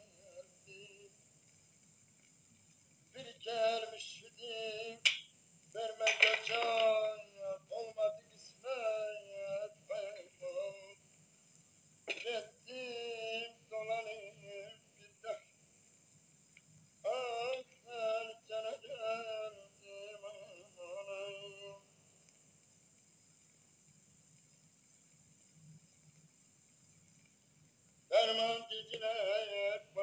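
A voice singing in wavering phrases separated by short pauses. The singing falls silent for the last several seconds.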